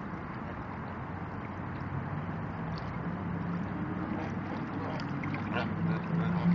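Steady low engine hum over outdoor wind-and-water noise, growing a little louder through the second half, with a few short duck quacks just before the end.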